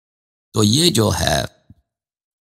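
A man's voice saying a short phrase of about a second, with silence either side.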